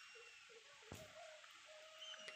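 Near silence: faint outdoor background with a few faint distant calls and a soft click about a second in.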